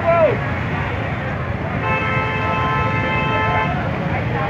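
A vehicle horn blows one steady note for about two seconds, starting a little before halfway, over crowd and traffic noise. A brief shout comes at the very start.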